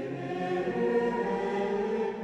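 Choir singing slow, long-held notes of sacred choral music, the chords shifting gradually.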